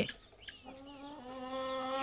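Young chicks peeping faintly with short high chirps. From just over half a second in, a steady low-pitched hum holds and grows louder toward the end.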